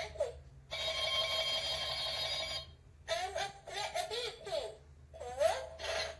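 Electronic toy sound effects from a battery-powered toy: a steady electronic ringing tone for about two seconds, then a run of short warbling, chirping electronic sounds.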